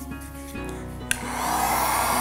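Electric hot-air heat gun switched on with a click about a second in, then running with a steady blowing hiss and whine, warming a silicone cake mould to loosen a frozen cream cake from it. Faint background music is heard before it starts.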